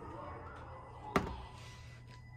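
A single sharp knock about a second in, over faint voices and a steady low hum.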